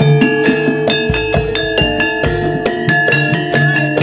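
Javanese gamelan music (gending) for a jaranan dance: bronze metallophones play a quick, busy melody of struck, ringing notes over a held tone, with a low drum stroke about a second in.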